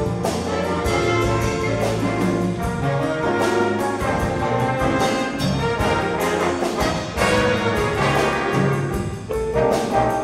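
A live big band jazz orchestra playing: brass and saxophone sections sounding chords together over a rhythm section of piano, bass and drum kit, with regular drum and cymbal strikes.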